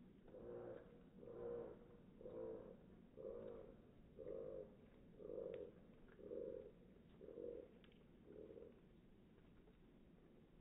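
A faint animal call repeated about once a second, nine soft hoots in an even series that fade toward the end.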